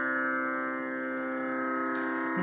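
Steady tanpura drone sounding alone, a sustained chord of unchanging pitches, with a faint click just before the end.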